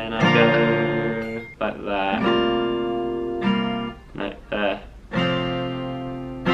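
Acoustic guitar strummed in separate, halting chords, each left to ring for a moment before the next: a beginner practising the G chord and the change to D/F sharp.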